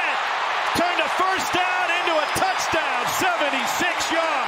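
A stadium crowd cheering loudly and steadily during a long touchdown run, with an excited man's voice calling out over the roar.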